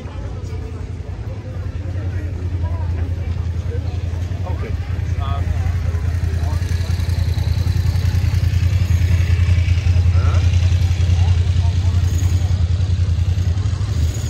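Night street ambience: scattered voices of passers-by over a steady low rumble that swells and then drops off suddenly right at the end.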